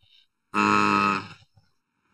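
A man's drawn-out hesitation sound, a single held 'eeh' of just under a second, in the middle of a spoken answer.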